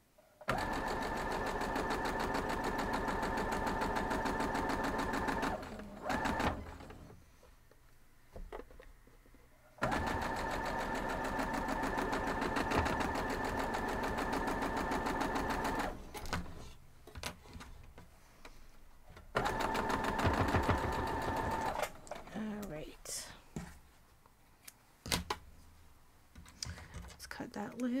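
Electric domestic sewing machine stitching a seam in three runs of several seconds each, a steady motor whine over rapid needle strokes, stopping and starting as the fabric is repositioned. Between runs and near the end come scattered clicks and fabric handling.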